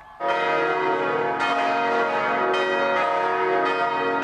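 Church bells of the Basilica of St. Mary in Minneapolis ringing. Fresh strikes come a little over a second apart, each ringing on under the next.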